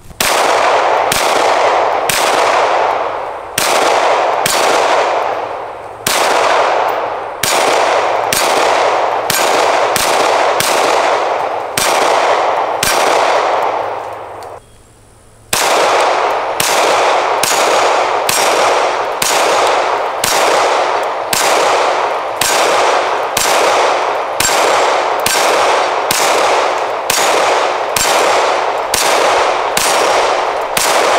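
Canik TP9SFX Rival 9mm pistol firing a long, steady string of single shots, about one every half second to second, each shot trailing off in a long echo. There is a short break of about a second halfway through, then the firing goes on at the same pace.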